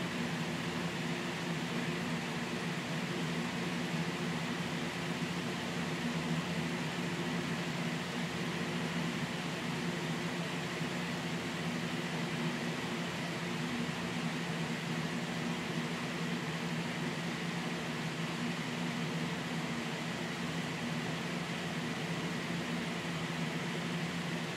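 Steady room background noise: an unchanging low hum with an even hiss, like a running fan or air conditioner.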